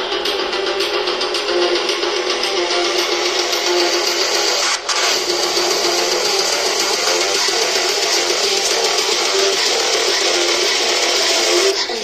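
Music played through the small oval speaker driver of a Philips 40PFK4101/12 TV, running in free air with no enclosure; the sound is thin, with almost no bass.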